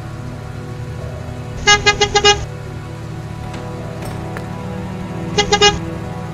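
A van's engine running, with its horn honked in a quick run of about five short toots about two seconds in, then three more near the end.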